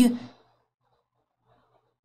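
The last word of a sentence trailing off in the first half-second, then near silence: a pause in the speech.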